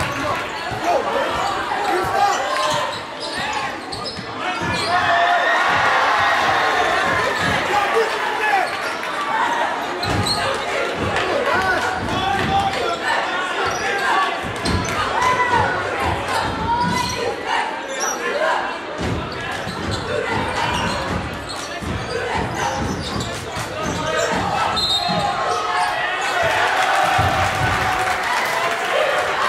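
A basketball dribbled on a gym's hardwood floor, its bounces thudding repeatedly, over a steady babble of spectators' and players' voices echoing in a large gym.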